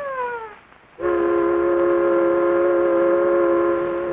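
Ship's whistle sounding one long, steady blast of several tones at once, starting about a second in.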